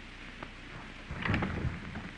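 Steady hiss of an early sound-film soundtrack, with a click about half a second in and a short burst of low rumbling thumps a little after a second.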